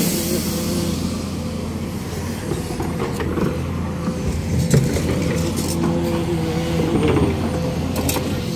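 Sumitomo 490 LCH excavator's diesel engine running at a steady pitch, with a higher tone that comes and goes over it. A few short knocks are heard midway.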